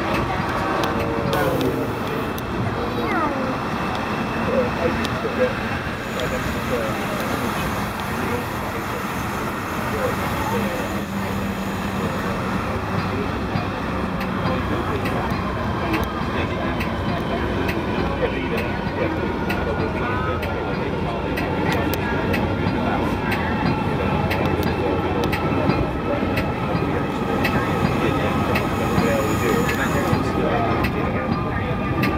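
Steady running rumble of a Metra commuter train, heard from inside its cab car as it rolls along the track, with indistinct voices of people talking over it.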